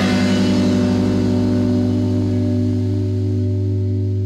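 A rock band's final chord left ringing: electric guitar sustaining over a deep low note, the drums stopped, slowly fading away.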